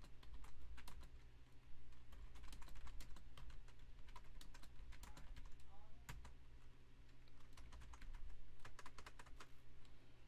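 Typing on a computer keyboard: quick runs of keystrokes with two short pauses, over a steady low hum.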